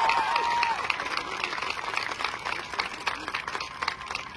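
Audience applauding, with a high cheer trailing off in the first second; the clapping thins out toward the end.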